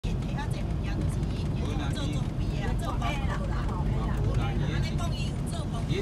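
Steady low rumble of a moving vehicle's engine and road noise heard inside the cabin, with a person talking over it.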